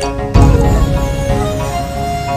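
Theme music for a TV programme's title ident: sustained pitched notes with a heavy low hit about a third of a second in.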